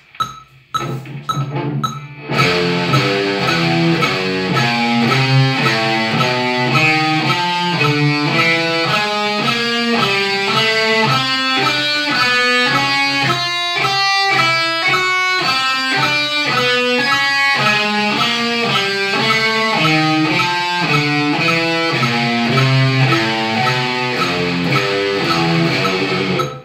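Electric guitar tuned a whole step down to D, playing a chromatic four-finger exercise at one note per click (quarter notes at 110 BPM) with alternate picking. The single notes climb step by step across the strings to the high E about halfway through, then step back down.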